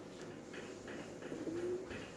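A bird cooing faintly: one short, low, steady call about one and a half seconds in.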